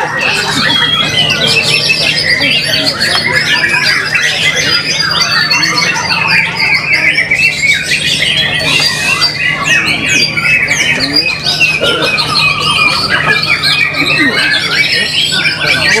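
White-rumped shama (murai batu) singing a continuous run of rapid, varied whistles and chattering trills, over a steady low hum.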